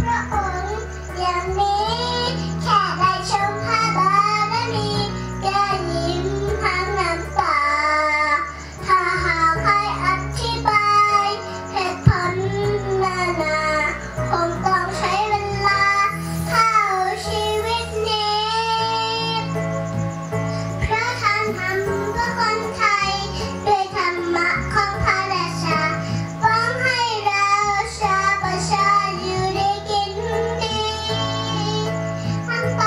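A young girl singing into a handheld microphone over backing music whose low bass notes shift every second or two.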